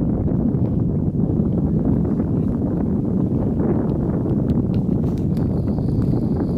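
Steady low rumble of wind buffeting the microphone, with a few faint clicks and knocks near the end.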